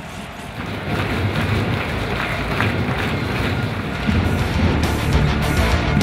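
Background music in an edited highlight mix, rising and growing louder from about four seconds in.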